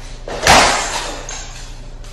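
A person's body crashing onto a hard floor in a fall: one loud thud about half a second in, trailing off over about a second.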